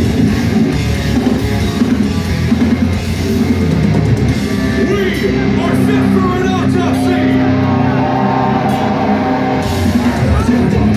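Deathcore band playing live, heavy distorted guitars and drum kit, recorded from within the crowd. The drumming drops away about halfway through, leaving ringing guitar chords, and the full band crashes back in just before the end.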